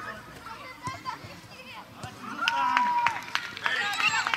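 Children's voices calling and shouting during a youth football match, quieter at first and louder from about halfway, with one drawn-out shout. A few short knocks are mixed in.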